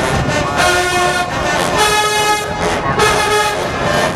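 A college marching band's brass section, sousaphones included, playing loud held chords, three long blasts each about a second long.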